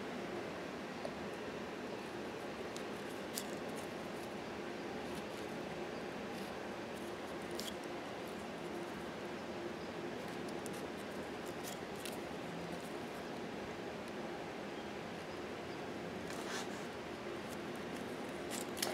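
Faint handling sounds of a die-cut paper doily being curled on a slotted metal tool: a few soft, scattered clicks and rustles over steady room hiss.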